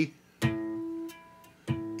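Electric guitar harmonics plucked twice, the first about half a second in and the second near the end. Each is a clear bell-like tone that rings and fades, sounded to compare the strings' pitches while tuning.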